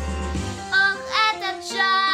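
A nine-year-old girl singing a pop vocal number over backing music. Her voice slides quickly up and down through a run in the middle, then settles into a held note near the end.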